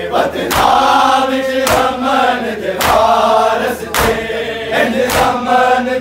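Men chanting a Shia noha together, punctuated five times by the sharp slap of many hands striking bare chests in unison (matam), a little over a second apart.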